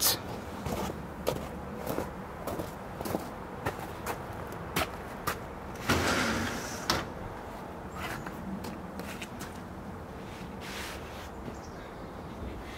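Scattered light knocks and handling noises as a potted bonsai is carried, with the sliding door of an aluminium-framed glass greenhouse being slid open about six seconds in.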